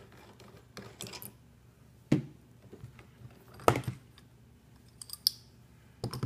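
Pliers and a metal connector-threading tool clicking and knocking as the tool is unscrewed from a freshly installed N-type connector. A handful of separate metallic clicks, the loudest about two seconds and three and a half seconds in.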